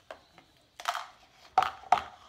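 A person spitting a bad-tasting jelly bean into a paper spit cup: a short spitting burst about a second in, then two sharper mouth sounds just before the end, like retching.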